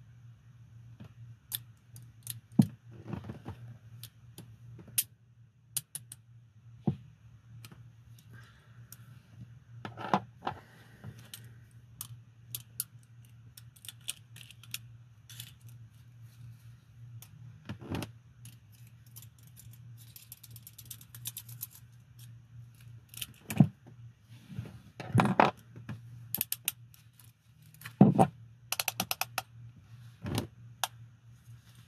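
Steel handcuffs handled in gloved hands: scattered metallic clicks and jangles, with a quick run of clicks near the end.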